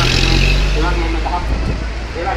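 A bus engine running low as the bus passes close by, its deep hum fading about a second and a half in. People's voices can be heard over it.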